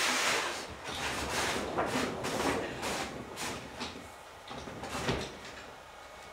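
A large sheet of paper photo backdrop rustling and crackling as it is handled and moved, in a run of short scraping sweeps over the first four seconds that then die down, with one more brief rustle about five seconds in.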